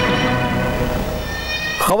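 News-bulletin theme music ending on a held, slowly fading chord, with a brief whoosh near the end as a man's voice begins.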